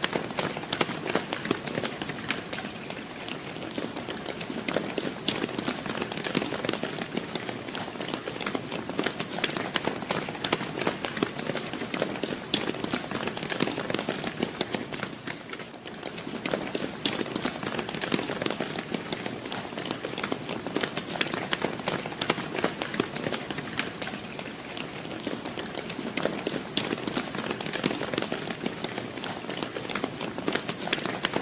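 Crowd of people running: a dense, continuous patter of many footfalls, dipping briefly about halfway through.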